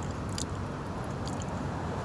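A person chewing a bite of a dry protein bar, with a few faint clicks, over a steady low rumble.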